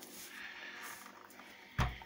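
Faint rustling from handling a yellow electric grass trimmer on a carpet, then a single dull thump near the end as the hand takes hold of it.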